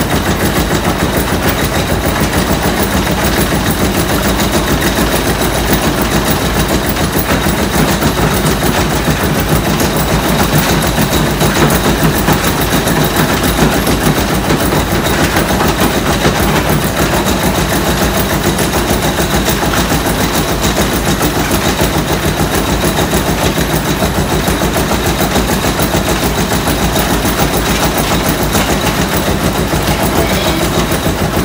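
Belt-driven millstone grinder and its overhead belt wheels running while grinding corn, a loud, steady, rapid mechanical clatter.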